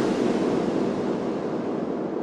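A wash of synthesized noise with no beat, slowly fading and growing duller as its highs drop away: the closing noise tail of a dark progressive psytrance track.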